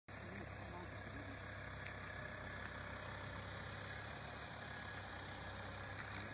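An engine idling steadily: a constant low hum under an even hiss.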